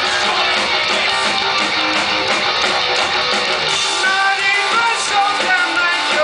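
A rock band playing live, loud and dense, with electric guitars and a steady drum beat. From about four seconds in, held high notes ring out over it.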